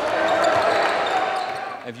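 Live game sound in a basketball gym: a reverberant hubbub of players and spectators, with a basketball bouncing on the hardwood floor.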